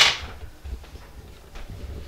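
A single sharp knock of kitchen handling at the start, ringing out briefly, then faint clicks and handling noises.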